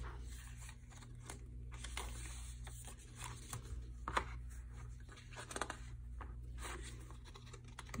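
Faint paper handling: the pages of a handmade junk journal being turned and the paper-clipped cards and papers in it rustled, with scattered light clicks and a couple of sharper ticks in the middle.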